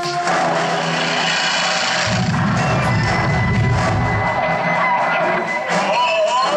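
Film-montage soundtrack played through theater speakers: dramatic music mixed with movie sound effects, with a deep rumble coming in about two seconds in and lasting a couple of seconds.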